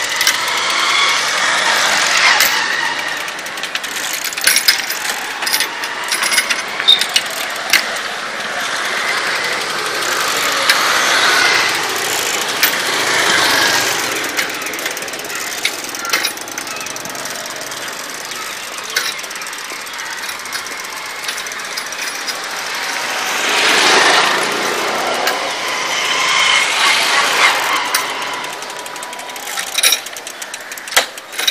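Clicking and rattling of a hand-cranked tricycle wheelchair's chain and crank as it is driven along a road, with road traffic swelling past several times.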